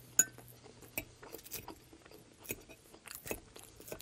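Crunchy chewing of a lettuce salad, picked up close, with a sharp clink of a metal fork against a glass bowl just after the start and scattered crisp crunches after it.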